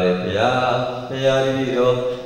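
A Buddhist monk's voice chanting in a melodic intonation, holding long steady notes with a rise in pitch about half a second in.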